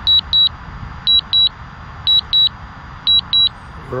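Drone remote controller beeping in high double beeps, about one pair a second: the alert it gives while the drone flies back on return-to-home. A low steady rumble runs underneath.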